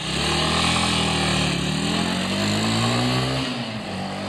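A small motorcycle engine running, its pitch dipping slightly, then rising steadily for a couple of seconds before falling away near the end.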